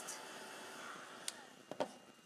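Craft heat gun blowing hot air to dry spray ink on paper. Its steady rush fades away over the first second and a half. A few sharp clicks and knocks follow near the end.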